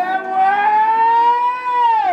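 A woman singing one long held note into a microphone, the pitch rising slowly and starting to slide down at the very end.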